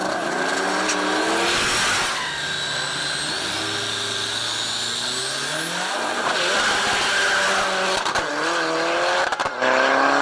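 Drag-race cars launching from the start line and accelerating hard down the strip. The engine note climbs in several rising sweeps as they shift up through the gears.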